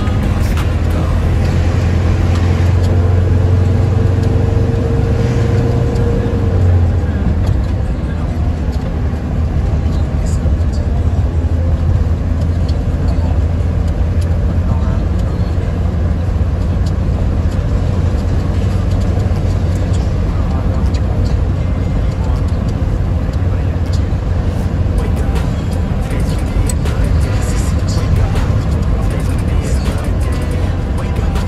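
Music with vocals playing over a steady low rumble from a car driving.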